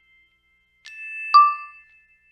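Electronic chime tones from the DJI Fly drone control app on the phone: a softer tone about a second in, then a louder bell-like ding, the app's alert as video recording starts.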